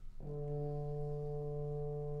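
Orchestral film-score music: a low brass note enters about a fifth of a second in and is held steady.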